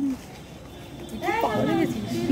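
A lull of low background noise, then a drawn-out, wavering vocal sound in the second half.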